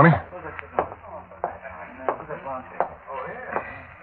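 Radio-drama footsteps sound effect: about five evenly paced steps, a character walking across a room, over a faint murmur of voices.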